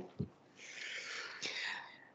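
A soft low thump, then a breathy hiss into a microphone lasting about a second and a half, in the pause before the next speaker talks.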